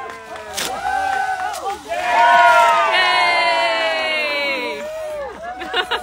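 A crowd cheering and blowing party horns together. Several long held horn tones sound at once, slowly fall in pitch and die away about five seconds in.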